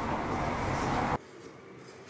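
Metal shaving tool scraping clay off the wall of a Raku tea bowl, a loud, steady scraping noise that stops abruptly just over a second in, leaving fainter, lighter scrapes.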